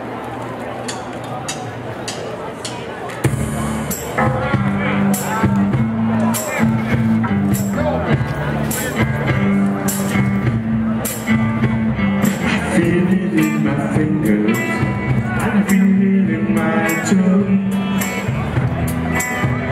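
A live rock band kicks into a song about three seconds in: electric guitars, bass and drums with a steady cymbal beat. Before that there are a few seconds of quieter background chatter and light ticks.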